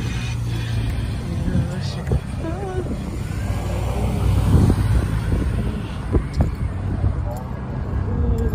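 Street traffic: cars driving past, a steady low rumble that swells about halfway through, with brief snatches of voices.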